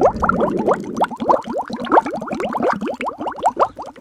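A bubbling sound effect: a rapid run of short rising bloops, several a second, with a low rumble at the very start.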